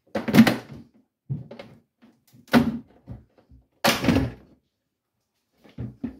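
Hard plastic clunks as the screwed-down rear panel inside a Beko fridge freezer's fridge compartment is tugged loose from its clips: three loud knocks over about four seconds, with fainter taps between them.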